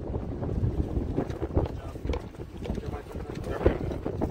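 Wind rumbling on an outdoor microphone, with faint voices in the background and a short spoken sound near the end.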